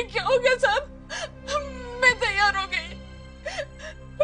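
A woman crying out in short, broken, sobbing wails over a low, steady background music drone.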